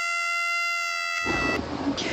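A high-pitched screaming sound effect held on one flat, unchanging note that cuts off about one and a half seconds in. A loud, noisy rush of sound takes over near the end.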